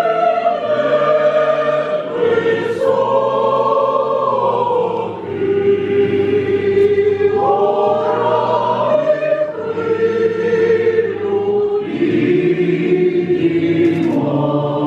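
Ukrainian folk choir of women and men singing in harmony, holding long chords phrase after phrase, with short breaks between phrases every few seconds.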